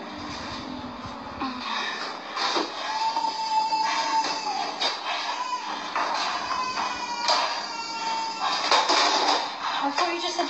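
A small child crying in long, drawn-out wails, over knocks and rustling as groceries are unloaded from crates.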